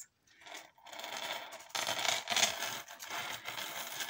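Fine gold necklace chains jingling and clinking as they are handled, starting about half a second in.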